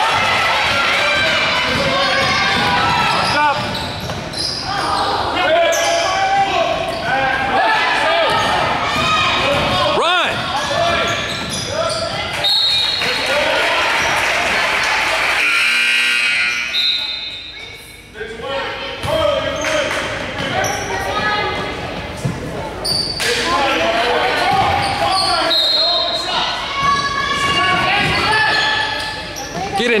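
Basketball dribbled and bounced on a hardwood gym floor during a game, with shouting voices of players and spectators echoing in a large hall. There is a brief lull a little past halfway.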